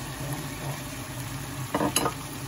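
Julienned chayote strips tipped from a bowl into a nonstick wok of shrimp simmering in broth, over a steady sizzle. There is a short clatter near the end.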